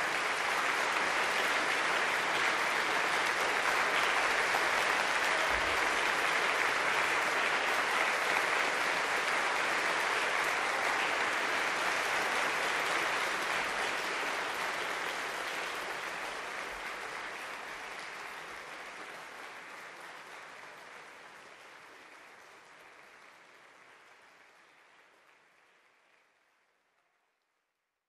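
Concert audience applauding: a full round of clapping that starts right after the music stops, holds steady, then slowly dies away over the second half.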